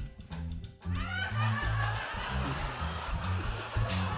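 Studio house band playing a groove with a prominent bass line. About a second in, a shout rises over it, followed by audience noise.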